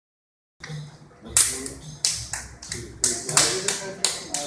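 Silent for about half a second, then hands slapping against forearms in a quick, uneven rhythm of sharp smacks, two or three a second: the pak sao slapping and trapping of a JKD trapping drill.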